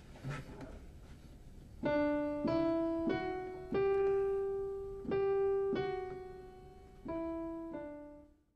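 A piano plays a slow single-line hymn melody, starting about two seconds in: about eight notes, one at a time, each struck and left to ring.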